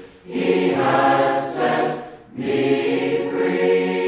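A choir singing held chords, with two short breaks between phrases: one right at the start and one a little past halfway.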